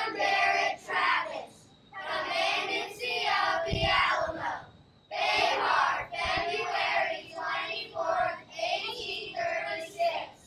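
A group of schoolchildren singing together unaccompanied, in phrases with short breaks about two and five seconds in. Two brief low thumps come near the middle.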